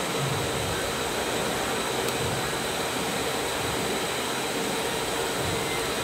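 TIG welding arc on 3 mm steel plate, a steady hiss with a faint hum.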